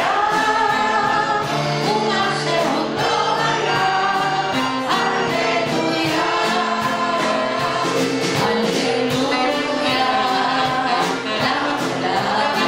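Live band music: a woman sings lead at the piano with a crowd singing along, over piano and a steady drum beat.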